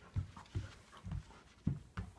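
Large black dog moving about on a hardwood floor close by: a run of soft, low thuds, about two a second.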